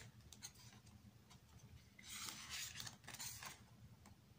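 Photo book pages being turned by hand, faint: a small tap, then two soft papery swishes about two and three seconds in.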